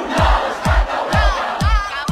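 A crowd of voices shouting and chanting a Catalan independence slogan in unison over a backing track with a steady kick-drum beat, about two beats a second.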